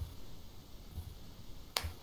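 A single sharp click near the end, with a few soft low thumps under faint steady hiss.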